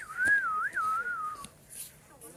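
A person whistling: one clear note that wavers up and down in pitch for just over a second, then stops.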